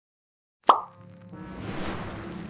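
Silence, then about two-thirds of a second in a single sharp pop sound effect with a quick falling pitch. Music starts right after it with held notes over a low drone, and a hiss swells up near the end.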